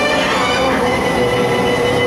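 Dark-ride background soundtrack: a loud, steady drone with held tones.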